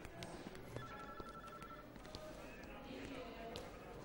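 Faint office ambience: indistinct background voices, with a few light clicks.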